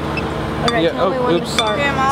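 Voices talking, starting about half a second in, over a steady low hum.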